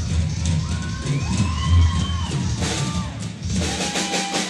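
Live drum kit solo: drums and cymbals struck in fast runs, with a crowd cheering and whooping over the playing.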